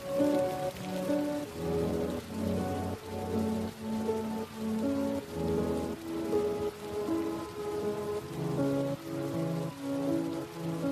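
Slow, soft instrumental music of held notes over a steady hiss of rain.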